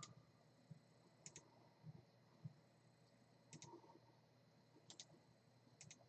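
Faint computer mouse clicks, mostly in quick pairs, a few seconds apart, against near silence.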